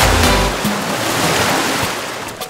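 Intro music ending on a low note, then a long noisy wash like breaking surf that slowly fades out.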